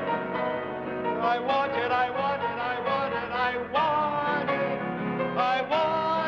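Piano playing an emotional, building passage, with a man's voice singing the melody along with it.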